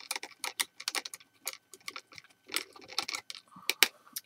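Paintbrush being rinsed in a water container: a quick, irregular run of light clicks and taps as the brush knocks against the container.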